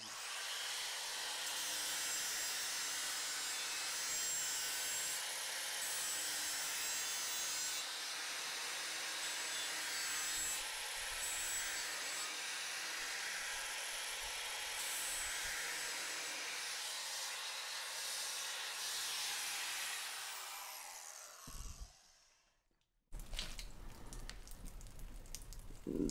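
Handheld grinder with a polishing pad running against the mitered edge of a porcelain tile, a steady high whir and gritty rubbing hiss as the edge is smoothed. About twenty seconds in the motor winds down and stops; after a brief silence a quieter, different background noise takes over.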